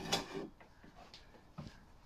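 A drawknife pulled across wood clamped in a shave horse, one shaving stroke that scrapes for about half a second at the start. After it come a couple of faint knocks and creaks from the wooden bench.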